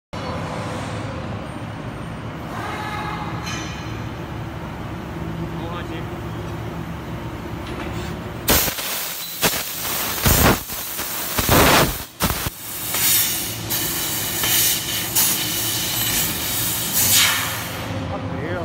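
Laser tube cutting machine: a steady machine hum, then, about eight and a half seconds in, the cutting head starts cutting a steel angle profile. Its assist-gas jet rushes in short loud bursts at first, then runs on more continuously with repeated surges, and stops shortly before the end.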